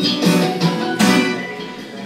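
Acoustic guitar strummed as a song accompaniment: a strum at the start and another about a second in, each ringing and fading away.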